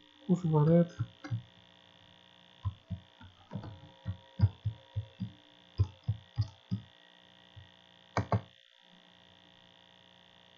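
Computer keyboard keys tapped in a quick, uneven run of about a dozen strokes while a password is typed, then two more taps about eight seconds in, over a steady electrical mains hum.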